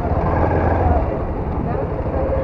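Motorcycle engine running steadily at low speed, a continuous low rumble.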